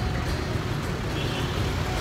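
Steady street traffic noise: a continuous rumble of motorcycles and cars on the road.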